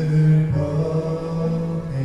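Live contemporary worship band: voices singing long held notes over acoustic guitar and electronic keyboard.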